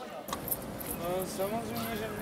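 Passers-by talking, with a few light jingling clinks early and again about a second in.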